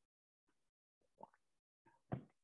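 Near silence, broken about a second in by one faint, short swallow as a sip of drink is taken.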